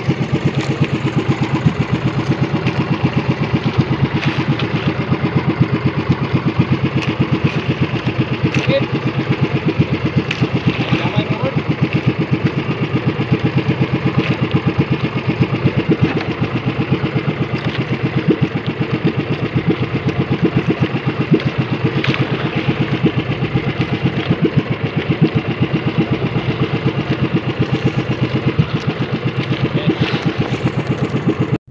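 Outrigger boat's engine running steadily with a fast, even putter.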